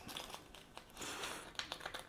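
Faint crunching and light clicks of a pizza cutter wheel rolling through a crusty, just-baked pizza base against a chopping board.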